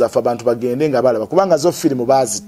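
A man speaking continuously in a steady, conversational voice.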